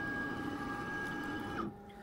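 Makera Carvera Air desktop CNC's axis motors driving the spindle head across the gantry in a rapid move: a steady whine that rises in pitch as the move starts and falls away as it stops, about a second and a half in.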